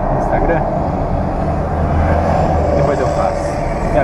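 The inline-six engine of a 1969 Ford Aero Willys running at low speed in traffic, heard from inside the cabin as a steady low hum. A deeper low rumble swells about halfway through and then fades.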